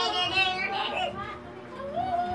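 A high-pitched, child-like voice calling out with wavering pitch, loudest in the first second and fading after.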